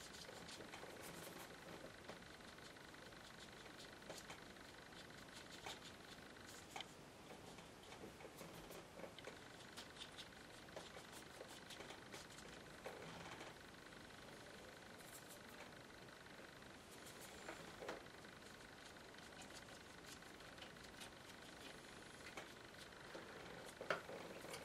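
Near silence: faint room tone with scattered light ticks and soft scratches of a small watercolour brush working on paper.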